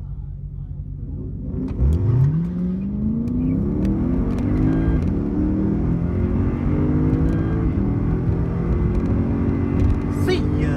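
A Lexus IS F's 5.0 L V8, breathing through an aftermarket X-Force cat-back exhaust, idles for about two seconds. It then launches at full throttle and revs up hard, winding up through the gears under hard acceleration.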